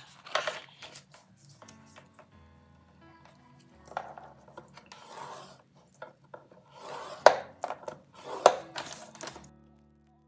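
Paper pages being handled and scored on a plastic scoring board with a bone folder to crease a fold, heard as rustling and scraping in several bursts, with two sharp taps in the second half, the loudest sounds. Faint background music runs underneath.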